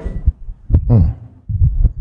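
A few low, dull thumps in a short break between sentences, with a brief sharper tick about three quarters of a second in.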